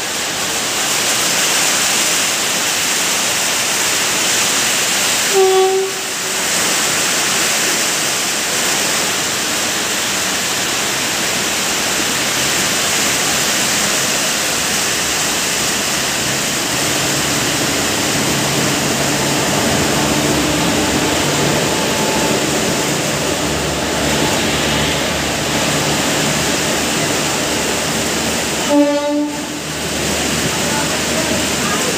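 Heavy rain falling steadily as an Indian Railways electric locomotive hauls a passenger train into the platform. A low hum joins from about halfway as the train draws in, and its coaches roll past near the end. Short train horn blasts sound about five seconds in and again just before the end.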